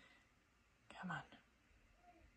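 Near silence: room tone, with a woman quietly saying "come on" about a second in.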